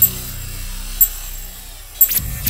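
Electronic intro music: a low drone fading away, with a sharp high tick at the start and again about a second in.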